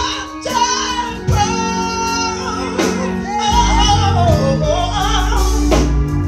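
A woman singing gospel into a microphone in long, gliding held notes, over live band accompaniment. A deep bass enters about halfway through.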